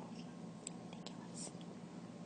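Quiet room tone: a steady low hum with a few faint, short clicks.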